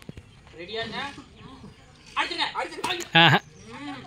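Voices calling out from onlookers in short bursts, with one loud, sharp shout a little after three seconds in.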